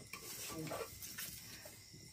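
Faint stirring and scraping with a metal spatula in a cooking pot: a few soft strokes over a low, steady sizzle of frying curry.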